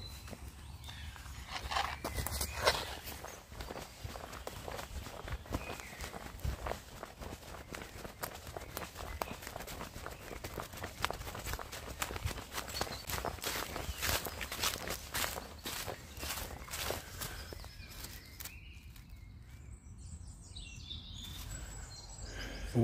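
Footsteps walking through dry fallen leaves, the leaves rustling and crackling with each step, easing off a few seconds before the end.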